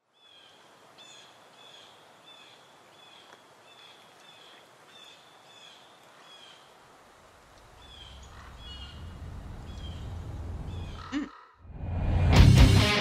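Ambient opening of a metal music video's soundtrack: a high, falling chirp repeated about twice a second over faint hiss, joined by a low rumble that swells from about two-thirds of the way through and cuts off near the end.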